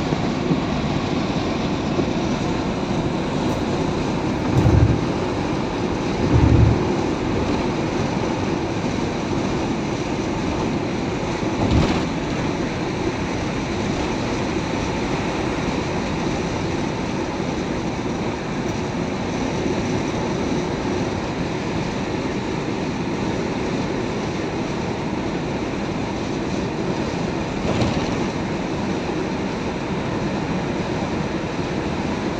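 Steady road and engine noise inside a Toyota van's cabin at highway speed. A few low thumps stand out about five and six and a half seconds in, again near twelve seconds and near the end.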